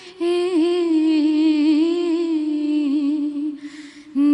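A young woman's unaccompanied voice singing a naat (an Urdu devotional poem), holding one long, ornamented phrase into a handheld microphone. She takes a breath near the end.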